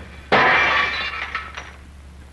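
A sudden loud crash, something breaking, that fades away over about a second, followed by a couple of small clinks.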